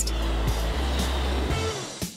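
Steady rush of air from a balloon pump blowing up a latex balloon, fading out over the last half second, with background music underneath.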